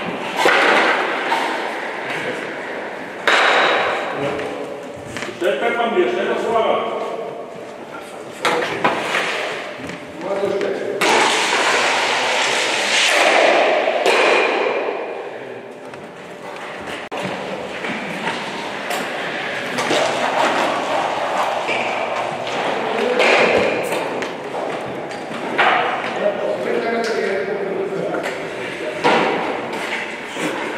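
Stocks sliding over a concrete hall floor and knocking sharply into other stocks at the target, several hard knocks over the stretch, with people talking in a large hall.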